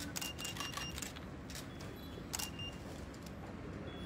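Camera shutters clicking several times in quick succession, mixed with a few short high beeps, faint against the hall's background noise.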